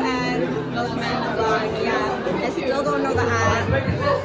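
Voices chattering over music with a steady bass line in a large, echoing hall.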